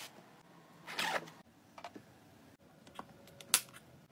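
Hands packing things into a quilted fabric tote bag: a brief rustle about a second in, a few light clicks, and one sharp click, the loudest sound, shortly before the end.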